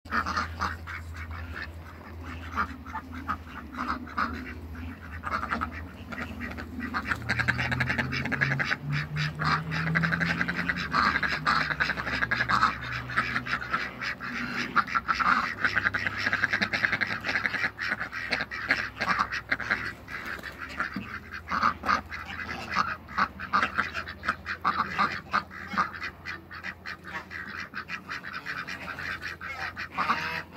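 Domestic ducks quacking and calling over and over, many short calls overlapping, with a low steady hum underneath.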